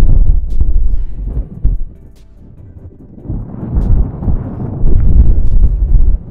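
Strong gusting wind buffeting the microphone: a heavy low rumble that drops away about two seconds in and comes back a second later.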